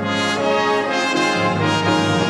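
Symphony orchestra playing sustained full chords, moving to a new chord about a second and a half in.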